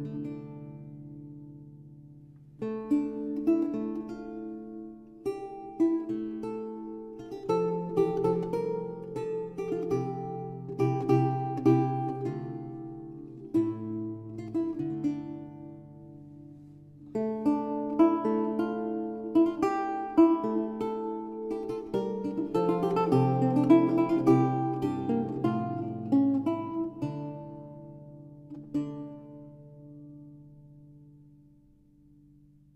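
Solo lute playing, plucked notes ringing and decaying in flowing phrases. The playing drops back around the middle, comes in strongly again, then dies away near the end.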